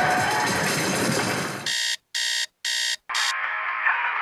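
A steady rushing noise stops suddenly, then an alarm clock sounds four quick electronic beeps, each cut off sharply.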